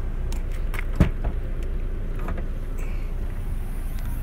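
Toyota C-HR's rear liftgate being unlatched and opened: one dull thump about a second in and a few light clicks, over a steady low outdoor rumble.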